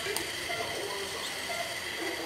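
Low background room sound with faint murmured voices and a single light click about a fifth of a second in, from a wire cutter working on the steel circumdental wires of a dental arch bar.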